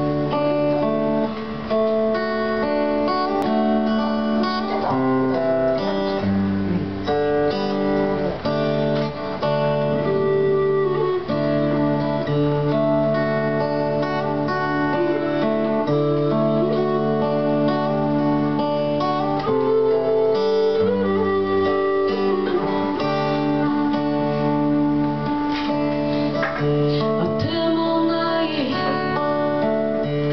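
Live acoustic band music: a strummed acoustic guitar with an electric guitar, and an end-blown flute carrying a melody over them.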